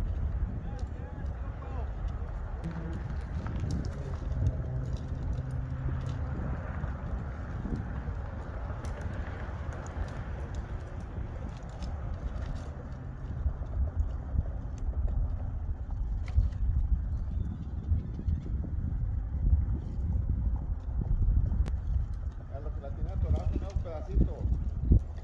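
A steady low outdoor rumble with scattered faint clicks, and a man's voice speaking near the end.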